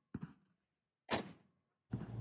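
Two quiet rifle shots about a second apart, slow aimed single shots from a KP-15, an AR-15-pattern rifle, each a sharp crack with a short ringing tail.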